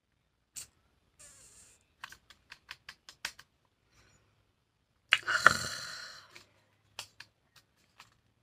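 Close handling noise of small objects: a run of light clicks and taps, then a louder rustling scrape lasting about a second, a little after halfway.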